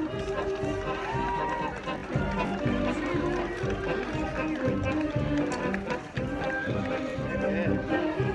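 High school marching band playing as it marches, held brass notes over drums, with voices from the crowd mixed in.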